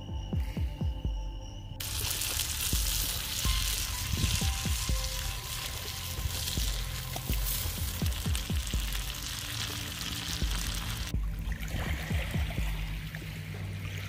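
Diced potatoes sizzling in a frying pan over a campfire, a dense steady frying noise that starts about two seconds in and stops abruptly about eleven seconds in, with background music underneath.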